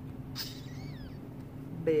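A cat meowing once: a short, high call that glides up and down in pitch, about half a second in.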